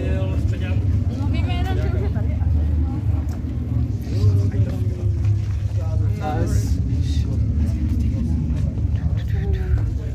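Passersby talking over a steady low rumble.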